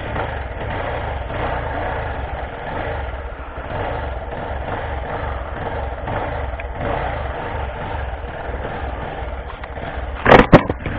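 A vehicle engine idling steadily, with an even low throbbing pulse.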